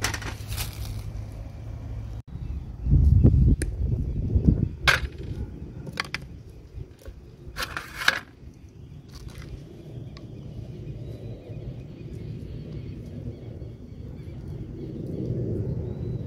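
Freshly cast lead toy parts and metal tools handled on a steel plate: scattered sharp clinks and taps, with a louder low rumble about three seconds in, over a steady low background noise.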